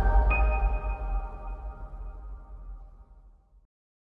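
Closing logo sting: a deep bass hit under a held chord, with a high ping about a third of a second in. It fades away and is gone about three and a half seconds in.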